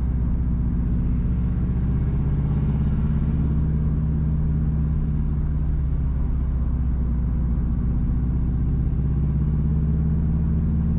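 A car being driven along a road: the engine and tyres make a steady low drone.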